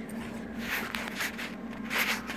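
Handling noise: light rubbing and scraping with a few short clicks as the hand-held camera is moved about, over a steady low hum.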